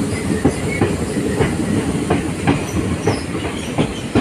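Passenger train running, heard from on board: a steady rumble with irregular clicks of the wheels over rail joints.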